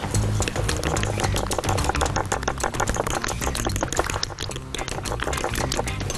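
Fork beating an egg-and-flour batter in a glass bowl: rapid, uneven clicking of metal against glass with wet stirring. Background music plays under it.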